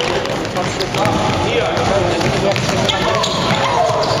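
Basketball game in a large sports hall: a ball bouncing on the court among several overlapping voices of players and onlookers calling out.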